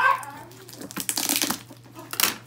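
Brown paper and cardboard packaging being pulled at and torn by hand, crinkling, with a louder burst of ripping about a second in.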